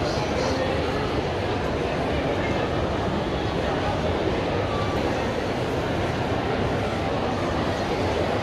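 Steady crowd hubbub of a busy convention exhibit hall: many overlapping voices and footsteps blurred into an even din, with no single voice standing out.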